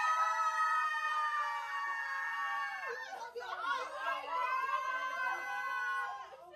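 A group of young women screaming with excitement: several voices hold one long shriek for about three seconds, then break into shorter squeals, gasps and laughter.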